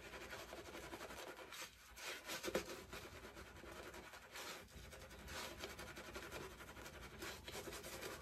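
Shaving brush swirling and scrubbing soap lather over a stubbled face, a faint continuous bristly rubbing with a few louder swishes.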